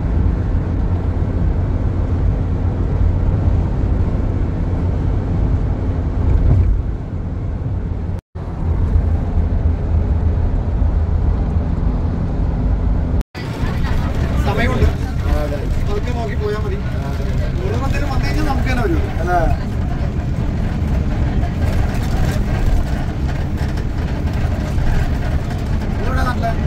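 Road and engine noise inside a moving car, a steady low rumble. After a cut about 13 seconds in it continues under voices talking.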